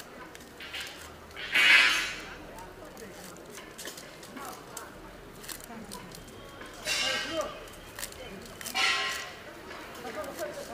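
Bamboo arrows being pulled in handfuls out of a straw teer target, a scraping, rattling rustle of shafts through straw, heard three times: about a second and a half in, and twice near the end.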